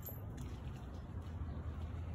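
Faint, steady low background rumble with light hiss; no distinct sound stands out.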